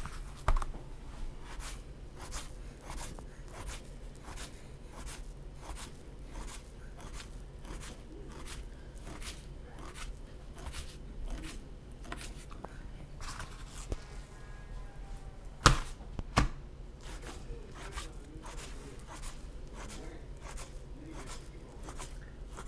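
Fillet knife scoring a raw trout fillet on a cutting board: a steady run of short cuts, with the blade tapping through to the board, and one sharper knock about two-thirds of the way through. The fillet is being scored crosswise so it opens up and dries quicker as pitsik (dried fish).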